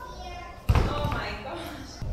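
A single heavy thud about a third of the way in: a small child landing feet-first on a padded gym mat after jumping down from a foam plyo box.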